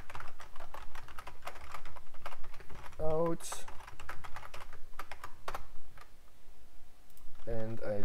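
Typing on a computer keyboard: a steady run of quick keystroke clicks, thinning out a little between about six and seven seconds in.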